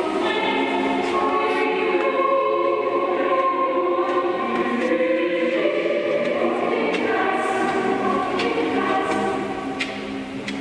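Background music: a choir singing slow, sustained notes.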